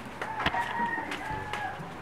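A rooster crowing: one drawn-out call lasting about a second and a half, dropping slightly in pitch near the end. A sharp click of handling noise comes about half a second in.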